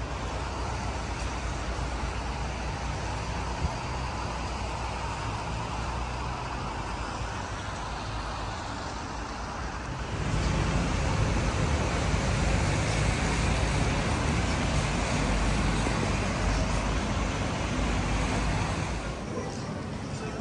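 Street traffic noise on a wet city road: a steady wash of passing cars. It grows louder, with more low rumble, about ten seconds in.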